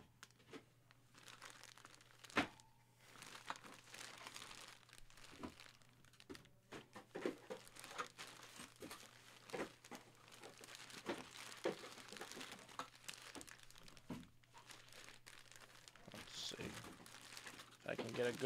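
Clear plastic bag crinkling faintly and irregularly as a jersey is handled inside it, with scattered sharp clicks, the loudest a couple of seconds in.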